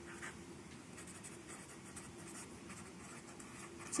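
Felt-tip marker writing on paper: a run of faint, short strokes as a word is written out.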